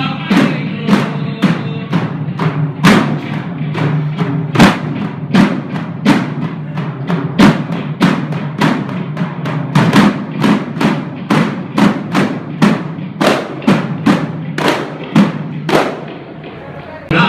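Several hand-held frame drums (daf) beaten together in a steady rhythm, about two to three strokes a second, over a low steady tone.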